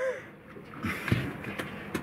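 A thump on a boat deck about a second in, as a wet body scrambles on it, with scuffling after it and a short sharp knock near the end.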